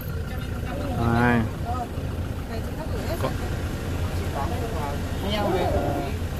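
Minibus engine idling with a steady low hum, under scattered quiet talk from the passengers and one short call about a second in.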